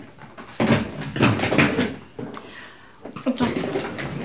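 Irregular short rustling and knocking sounds from a pet dog at play and a person getting up from a sofa.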